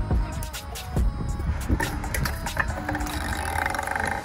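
Stunt scooter wheels rolling on concrete skatepark ramps, with a steady low rumble and repeated sharp knocks and clatters from the deck and wheels hitting the surface.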